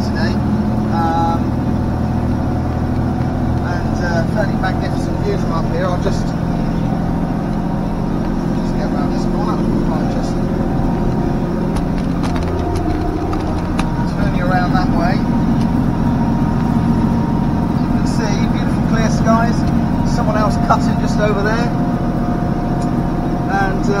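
John Deere tractor engine running steadily under load while mowing grass, heard from inside the cab, with the mower running behind. The engine note shifts briefly about halfway through.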